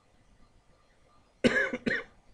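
Quiet room tone, then a person coughing twice in quick succession about one and a half seconds in.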